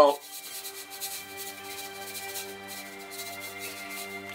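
Salt shaken from a stainless steel shaker onto raw beef ribs: a faint, repeated high hiss of grains with each shake, over background music with steady held notes.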